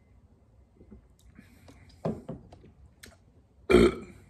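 A man burps once, short and loud, near the end, just after a mouthful of hazy IPA; a softer, shorter sound comes about two seconds in.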